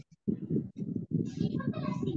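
A person talking, the words not made out, after a brief silence at the start.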